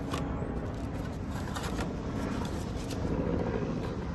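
Foil trading-card packs being handled and pushed into their cardboard box, a few short rustles and taps, over a steady low background rumble.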